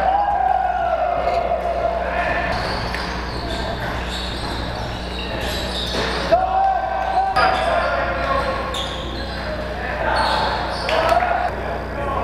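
Basketball game sounds in an echoing gym: a ball bouncing on the hardwood floor, sharp knocks and players' shouts, including a couple of held calls lasting about a second each.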